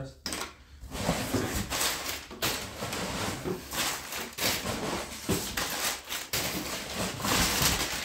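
Brown kraft packing paper being pulled out of a shipping box and crumpled by hand: a dense, continuous crackling rustle.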